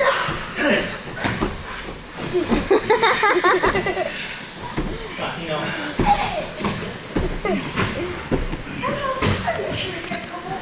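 Indistinct chatter and calls from several children and adults, overlapping, with scattered short knocks and thumps.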